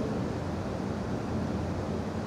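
Steady room noise: an even, featureless hiss and low rumble, with no distinct events.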